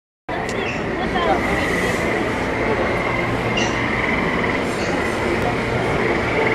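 Dark-ride bayou ambience: a steady dense wash of noise, starting suddenly just after the opening, with a continuous high pulsing chirr like crickets running through it and a murmur of voices.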